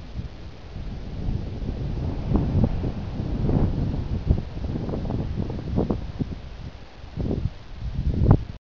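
Wind rumbling on the camera microphone, with irregular rustling and knocks. It grows louder after about two seconds.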